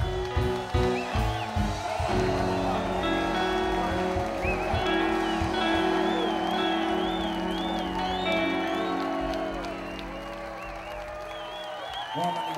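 Live roots reggae band ending a song. Drums and bass hit in rhythm for about two seconds, then a held closing chord rings out and slowly fades. A high wavering tone sounds over the chord, and the crowd cheers.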